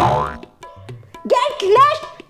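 A comic sound effect right at the start, a sudden sound whose pitch falls away over about half a second, over background music with a steady low drum beat.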